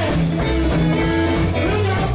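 Live band playing an up-tempo boogie with no vocals: electric guitar over a walking bass line and drum kit.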